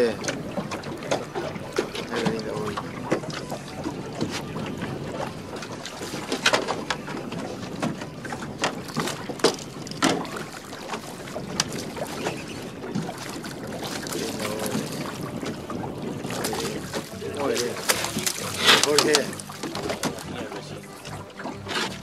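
Wind and water noise around a small fishing boat, with scattered clicks and knocks from a baitcasting reel and rod as a hooked fish is played to the boat. A fish splashes at the surface around the middle.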